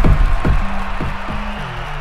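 Background music with a steady beat, drum hits about twice a second over a low bass line, getting quieter toward the end.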